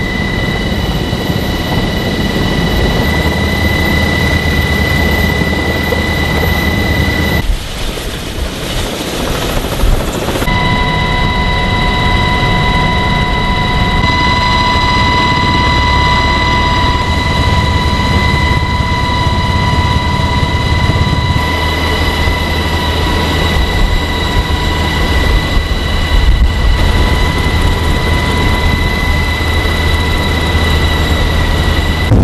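Helicopter cabin noise in flight: a loud, steady rumble with high, steady whines on top. The sound dips and changes abruptly about seven and a half seconds in, then settles again about ten seconds in.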